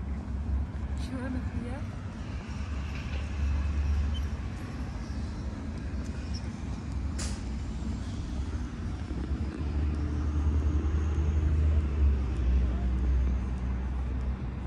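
Outdoor city ambience: a steady low rumble of traffic with people talking in the background, and one sharp click about seven seconds in.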